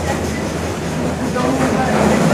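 Passenger train running along the track, heard from an open carriage window: a steady low rumble of wheels and coaches.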